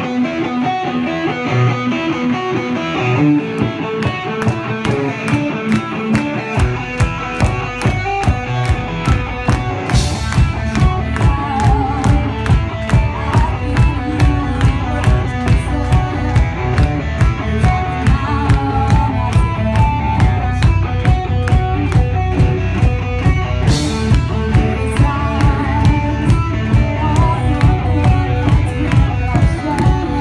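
Live rock band playing: electric guitar at first, then drums and bass come in about six seconds in with a steady beat of about two hits a second. Cymbal crashes about ten seconds in and again later.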